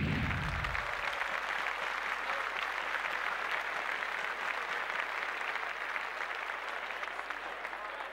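Applause: many hands clapping in a dense, steady patter that begins to fade near the end.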